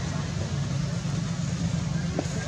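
A steady low rumble with an even hiss over it, unchanging throughout.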